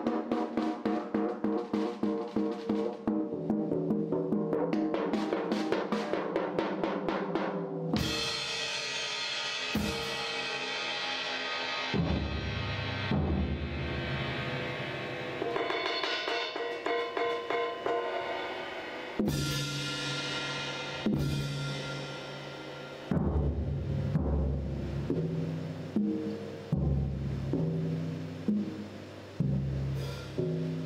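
Drum kit played with soft-headed mallets: fast runs of drum strokes, then a ringing cymbal wash that starts suddenly about eight seconds in and another crash near twenty seconds, followed by single tom hits landing on different low pitches.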